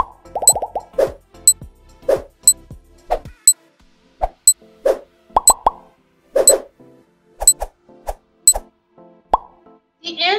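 Countdown-timer music cue: short, separate notes with a sharp high tick about once a second.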